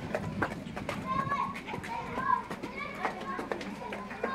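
Street ambience of children's voices calling and playing at a distance, with scattered short clicks and knocks.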